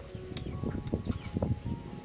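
Chewing a mouthful of crisp toasted garlic-butter baguette: a quick irregular run of small crunches and mouth sounds.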